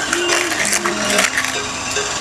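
Light clinks and plastic rustling as takeaway food is handled and bagged at a counter, with faint voices underneath.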